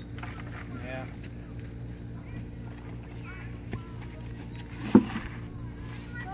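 Outdoor ambience: faint distant voices over a steady low hum, with one sharp knock about five seconds in.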